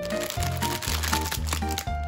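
Plastic wrappers of baumkuchen packets crinkling as they are handled, over background music with plucked notes and a pulsing bass line.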